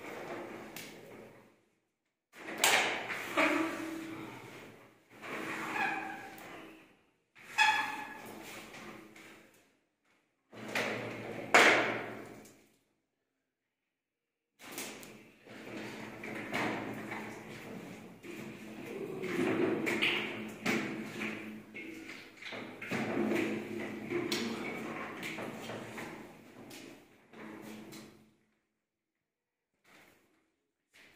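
Plaster being scraped and rubbed by hand on a ceiling moulding, with a few sharp knocks. The sound comes in short stretches broken by abrupt silences.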